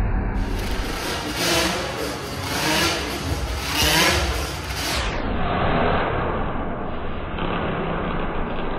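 Motorcycle engines revving inside a steel globe-of-death cage, rising and falling in surges about every second or so.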